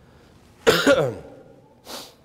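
A man coughs once, a sudden sound about two-thirds of a second in that lasts about half a second, followed by a shorter, softer sound near the end.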